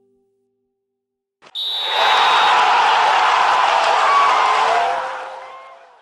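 A crowd cheering, starting suddenly after a second and a half of silence and fading out near the end.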